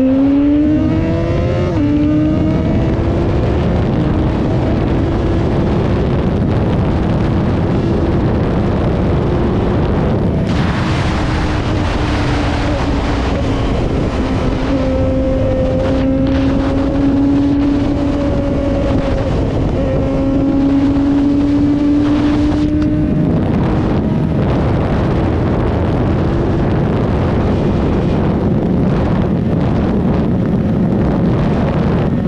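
Remapped Yamaha XJ6 inline-four engine pulling hard at full throttle through the gears as the bike climbs past 200 km/h. The engine pitch climbs slowly and steps at the shift points near the start and about two thirds of the way in. Strong wind rush on the camera microphone builds up from about a third of the way in.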